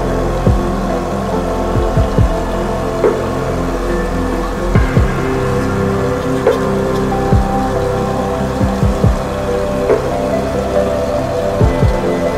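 Background music of sustained, slowly shifting tones, with irregular short low thumps throughout.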